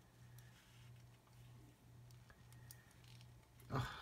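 Faint, scattered clicks and light taps of plastic model-kit parts being handled and pressed together by hand, over a steady low hum.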